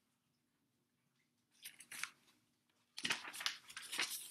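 Paper pages of a large picture book being turned: a brief rustle about halfway through, then a longer run of crinkling and flapping paper in the last second.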